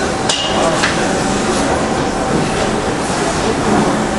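A screen-printing frame knocking on the print table as it is handled, with one sharp knock about a third of a second in and a lighter one just before a second. Behind it runs a steady, loud workshop noise.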